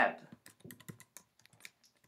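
Typing on a computer keyboard: a run of separate key clicks, several a second.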